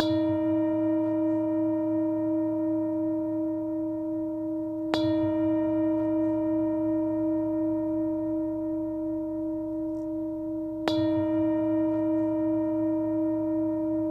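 Tibetan singing bowl struck three times, about five to six seconds apart. Each strike rings on in a long, sustained tone whose loudness wavers slowly, and each new strike falls while the last is still ringing.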